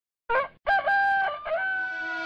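A rooster crowing: a short rising first note, a brief break, then a long held call that steps down and back up in pitch.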